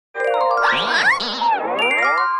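Short animated-intro jingle: ringing, bell-like tones with swooping pitch glides winding up and down over them.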